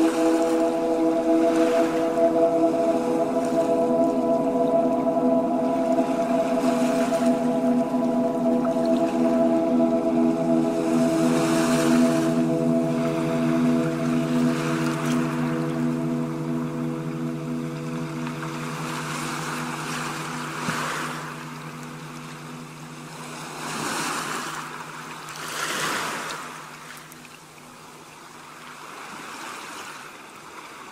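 Ocean surf breaking and washing up a beach, with several waves swelling and falling back in the second half. Over it, soft instrumental music of long held tones fades away after about twenty seconds.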